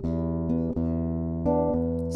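Solo classical guitar, fingerpicked: single melody notes plucked about every three-quarters of a second over a low bass note that keeps ringing, in an instrumental passage of a folk song.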